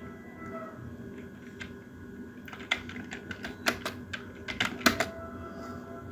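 Computer keyboard being typed on: scattered key clicks, most of them in the second half, over a faint steady hum.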